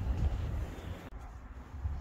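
Low wind rumble on the microphone, with no distinct sound, easing off in the second half.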